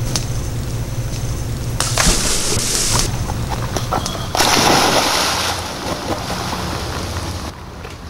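A scuba diver in full gear stepping off a small boat into the sea, hitting the water with a splash about four seconds in. A brief hiss comes about two seconds in, and a steady low engine hum runs underneath until just before the end.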